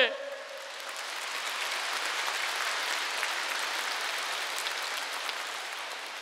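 A large audience applauding in a cathedral, the clapping swelling and then slowly fading away.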